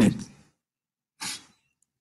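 The tail of a man's spoken word fades out, then a single short breath about a second later.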